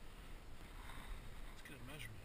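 Wind rumbling on an action camera's microphone over open water, with faint water sounds around a float tube and a short muffled voice-like sound near the end.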